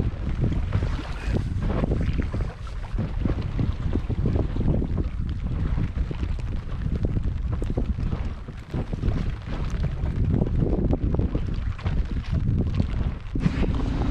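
Wind buffeting the microphone in gusts over choppy sea water splashing around a small inflatable boat.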